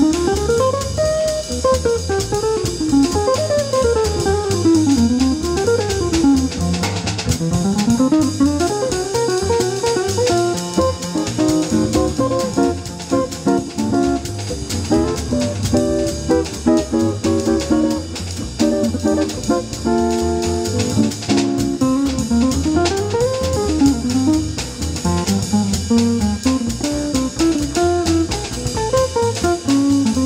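Live jazz trio of acoustic guitar, upright double bass and drum kit played with sticks. The guitar plays quick single-note runs rising and falling, over a steady bass line and ride cymbal time.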